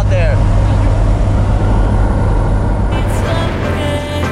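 Steady drone of a skydiving jump plane's engines and propellers, with rushing wind noise, as heard inside the cabin in flight. Brief raised voices cut through at the start and again about three seconds in.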